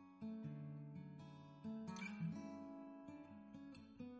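Background music: gentle acoustic guitar, plucked notes and strummed chords.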